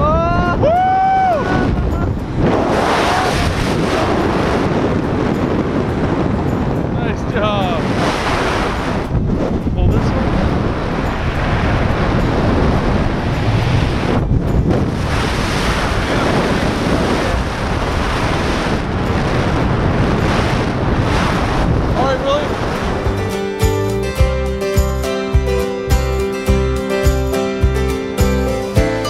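Heavy wind rushing over a helmet camera's microphone under an open parachute canopy, with a few short whoops. About 23 seconds in, background music with a steady beat and plucked guitar takes over.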